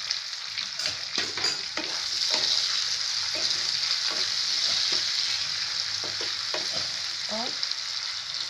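Cut potatoes and onions sizzling in hot oil in a frying pan while a wooden spatula stirs and scrapes them, with scattered knocks of the spatula against the pan.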